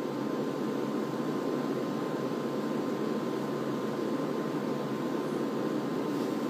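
Steady room noise, an even low hiss with a faint thin whine running through it, picked up by a phone's microphone.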